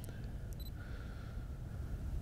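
Camera shutter clicks: one sharp click at the start and another about half a second in, the second with a short high beep. A low steady rumble runs under them.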